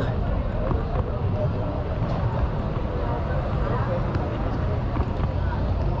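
Busy street-market ambience: indistinct chatter of people around, over a steady low rumble.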